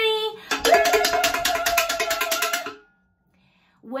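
Wooden spoon drumming a fast run of strikes on a metal saucepan for about two seconds, the pan ringing under the blows, then stopping suddenly.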